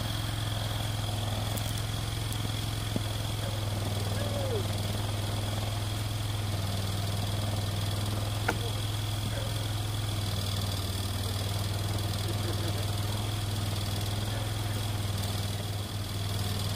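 ATV engine idling steadily, with a light knock about eight seconds in.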